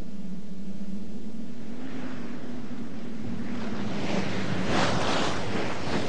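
Rushing river water and wind as a cartoon sound effect, building from about two seconds in and swelling in strong surges near the end, over a low steady hum.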